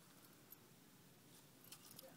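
Near silence, with a few faint clicks about half a second in and near the end.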